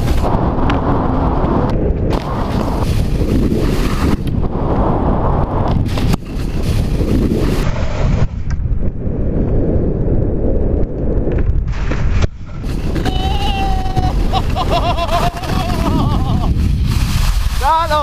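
Wind buffeting an action camera's microphone while skiing at speed, mixed with skis sliding over snow: a loud, steady rush with a few brief dips.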